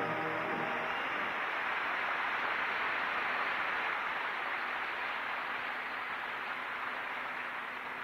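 Arena audience applauding in a steady wash that slowly fades, after the last note of orchestral skating music at the very start.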